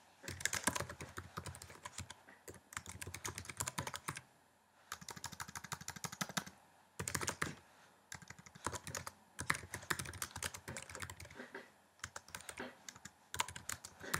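Typing on a computer keyboard: quick runs of key clicks broken by short pauses, fairly quiet.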